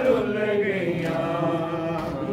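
Men's voices chanting a Punjabi noha, a Shia mourning lament, drawing out one long held note at the end of a line.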